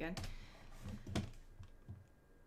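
A few key presses on a computer keyboard, the sharpest click about a second in.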